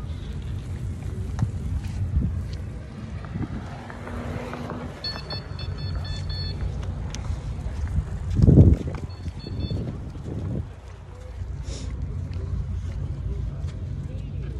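Wind rumbling on the microphone outdoors, a steady low noise with a louder burst about eight and a half seconds in.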